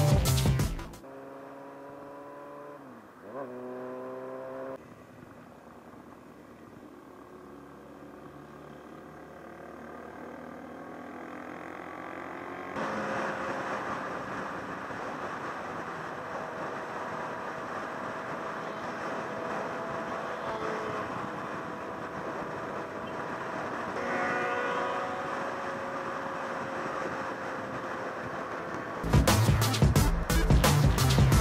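Onboard sound of a motorcycle being ridden: the engine note drops and then climbs again a few seconds in, as at a gear change. After that comes a steady rush of wind and engine noise that builds with speed and gets louder about halfway through.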